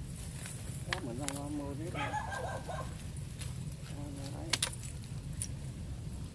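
Brief spoken sounds from people close by: three short voiced stretches, the middle one higher, over a steady low hum, with a few light clicks.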